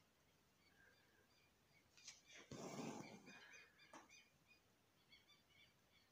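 Near silence, with a faint rustle of embroidery thread being drawn through fabric about two and a half seconds in, and faint short high chirps in the background.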